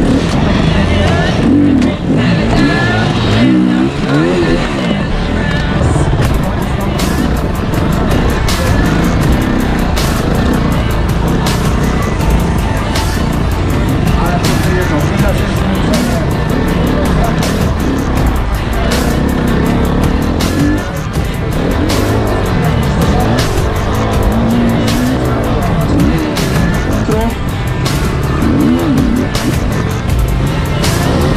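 KTM enduro motorcycle engine heard from a camera mounted on the bike, revving up and falling back again and again as the rider works through the course, with many sharp clicks and knocks from about six seconds in.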